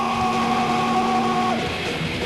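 Distorted electric guitars of a live heavy metal band hold a ringing note. About three-quarters of the way in the full band comes in with a heavy riff.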